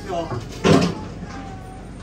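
Indistinct voices of people talking, with one louder moment about three-quarters of a second in.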